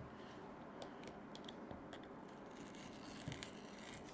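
Faint, scattered small clicks and taps of hands handling plastic RC truck suspension parts and a screwdriver, a few ticks spread over several seconds.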